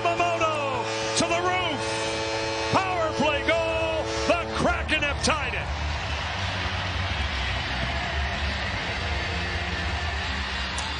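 Arena goal horn sounding one long steady note while the home crowd cheers, with fans whooping and yelling over it. The horn stops about five seconds in, leaving loud crowd noise over arena music with a deep bass.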